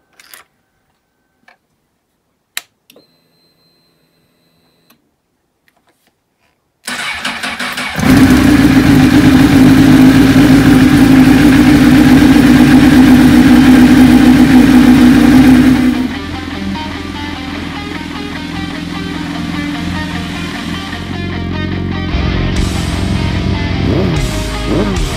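A Honda sportbike's engine is cranked by its starter about seven seconds in and catches a second later, running loud and steady for about eight seconds on this second attempt to start it. The sound then drops suddenly, and a quieter, slowly rising sound runs to the end. Before the start there are only a few faint clicks.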